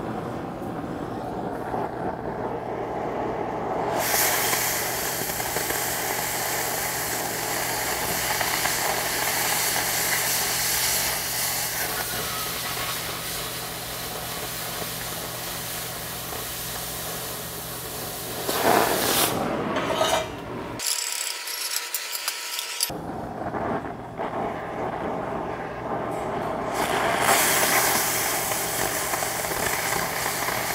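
Oxy-acetylene cutting torch burning through a rusty, mill-scaled steel I-beam flange. The flame runs with a steady hiss, and about four seconds in a much louder, full hiss starts as the cut gets going. It stops for a few seconds a little past twenty seconds in and starts again near the end.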